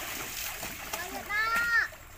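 Children splashing and wading in a shallow pool, water sloshing and spattering throughout. About halfway through, one child's voice rings out in a loud, high-pitched call lasting about half a second.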